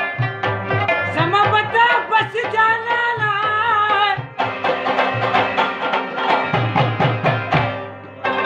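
Pashto tappe folk singing: a man's voice holds a wavering sung line from about one to four seconds in, over steady hand-drum strokes and quick instrumental notes. The drumming and instruments carry on alone after the voice stops.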